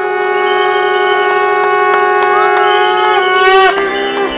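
Conch shells (shankha) blown together in one long held note, rich in overtones, as in Hindu aarti worship. The note swells slightly, bends up in pitch and breaks off shortly before the end.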